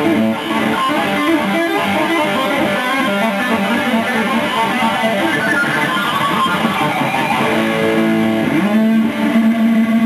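Electric guitar playing a solo of quick single-note runs, then sliding up near the end into one long held note.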